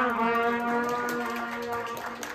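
Trumpets holding one long final note that slowly fades, with a few hand claps coming in near the end.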